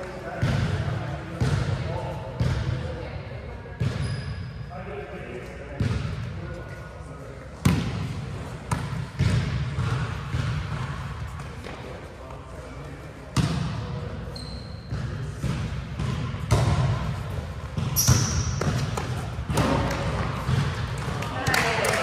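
A volleyball being hit and bouncing on a hardwood gym floor, with a sharp smack every few seconds. Sneakers squeak on the court a few times, and players' voices carry in the large gym.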